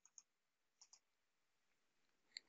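Near silence broken by a few faint computer mouse clicks: one just after the start and a quick pair just under a second in.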